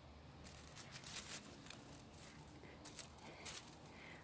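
Faint rustling and soft crackling of tomato foliage being brushed, in two short spells.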